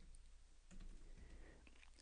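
Faint computer keyboard typing: a few soft key clicks, barely above room tone, as a terminal command is typed and entered.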